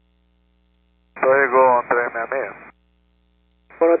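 Air traffic control radio: a voice on the tower frequency, thin and narrow-band, with one short transmission about a second in and another starting near the end.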